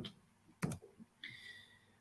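A single short click a little over half a second in, then a faint, brief high tone near the middle, over quiet room tone.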